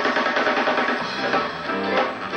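Blues band playing live, with electric guitars and drums.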